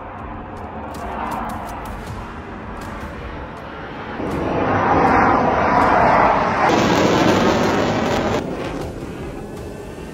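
Low-flying Navy fighter jet passing overhead: broad jet noise that builds to its loudest about five to seven seconds in, then eases off. It changes abruptly twice near the end, where the footage is cut.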